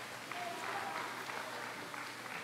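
Audience applauding, steady and soft.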